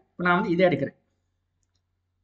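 Speech only: a man's short spoken phrase in the first second.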